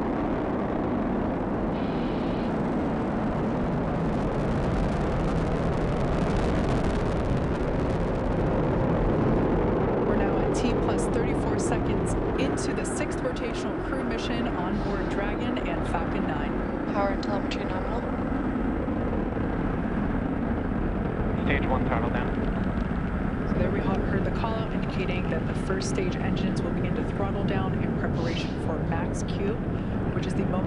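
Falcon 9 first stage's nine Merlin 1D engines during ascent, heard from the ground as a steady, dense noise with crackling through it from about ten seconds in.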